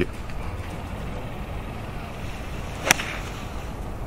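Golf club striking the ball on a 70-yard approach shot: one sharp crack about three seconds in.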